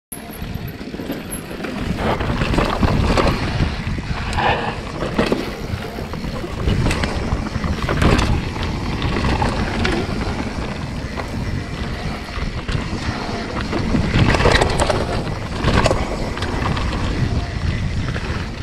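Santa Cruz Hightower mountain bike ridden fast down a dirt singletrack: continuous wind noise on the onboard camera's microphone and tyres running on dirt, with many sharp knocks and rattles as the bike hits rocks and bumps.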